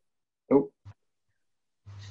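A man's short exclamation, "oh", then silence; a low steady hum comes in just before the end.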